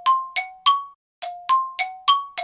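Bright chime notes struck in a quick run, about three a second, each ringing briefly and alternating between a lower and a higher pitch, with a short pause about a second in.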